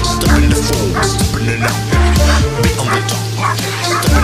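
Music with a steady beat. Over it a German shepherd barks repeatedly, straining on its leash at a helper in a bite suit during protection bite work.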